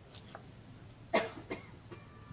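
A person coughing: one sharp cough about a second in, followed by a smaller second cough half a second later.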